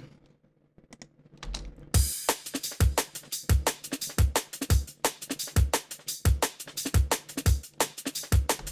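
The drum parts of a drum and bass track playing back on their own: a layered kick and a layered snare with fast, sharp high ticks between the hits. The beat comes in about one and a half to two seconds in, after a short near-quiet start.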